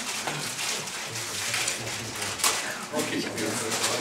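Indistinct voices murmuring in a lecture room, with one sharp click about two and a half seconds in.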